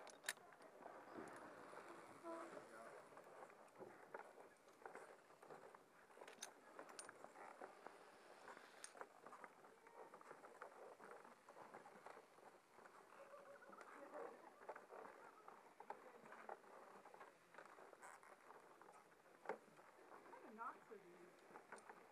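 Near silence, with faint irregular knocks and clicks from walking across a wooden-slat cable suspension bridge in a harness, and faint distant voices.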